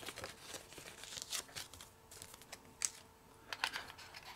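A folded paper instruction leaflet being handled and folded shut: light paper rustling and crinkling with a few sharp clicks. Near the end come a few light taps and clicks as the hands go into the small plastic box tray.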